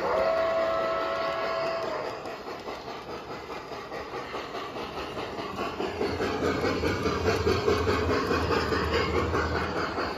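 G scale model steam locomotive's sound system blowing its steam whistle for about two seconds, then rhythmic chuffing with the hiss and rumble of the train rolling on the track, growing louder in the second half.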